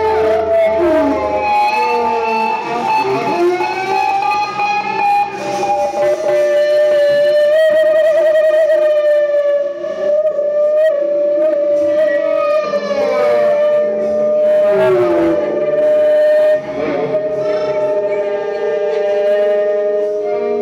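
Live instrumental jam-band music: an electric guitar holds a long sustained note with sliding pitch bends over the rest of the band.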